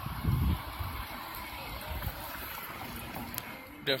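Wind buffeting a phone microphone outdoors over a steady street rush, with a loud low rumble about half a second in and smaller ones after.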